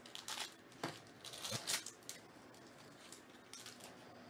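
Foil wrapper of a trading-card pack crinkling and tearing as it is opened by hand, with several sharp crackles in the first two seconds, then quieter.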